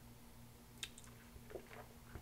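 Faint mouth sounds of sipping whisky from a glass: a small click about a second in, then a few soft wet sips and a swallow, over a low steady hum.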